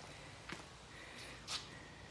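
Two short, soft breathy noises close to the microphone, about a second apart, the second one brighter and louder, over a faint steady background.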